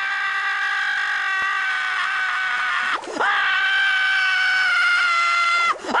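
Squidward Tentacles' cartoon scream: one high, drawn-out "Ahhh" held on a single pitch that sinks slowly. It breaks for a short gasp about three seconds in and again near the end, then carries on.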